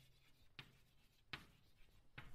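Faint chalk scratching on a chalkboard as letters are written, in short strokes, the two clearest a little under a second apart.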